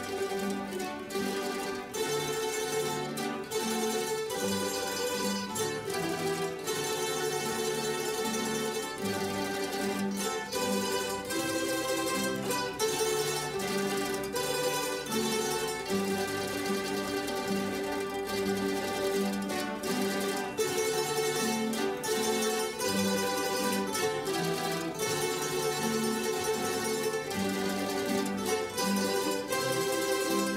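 A mandolin orchestra of mandolins and guitars playing a piece together, its plucked notes in a steady rhythm. The music strikes up abruptly at the very start.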